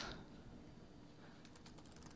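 Faint typing on a computer keyboard, a short run of quiet key clicks about halfway through.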